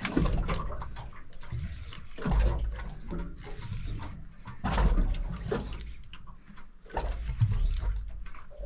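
Water slapping and sloshing against a boat's hull in surges about every two seconds, with wind rumbling on the microphone.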